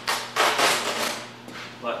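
Masking tape being pulled off the roll in two quick, noisy rips in the first second.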